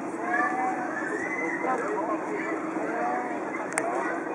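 Voices of people chatting in the background over a steady low hum, with a single sharp click near the end.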